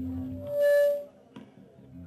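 A live band's amplified last notes ring out low and fade. Then comes a short, loud whistling tone with a hiss, cut off abruptly about a second in, as the song ends.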